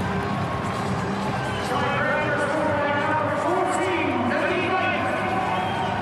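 Rugby stadium crowd noise with a man's voice calling out in the middle.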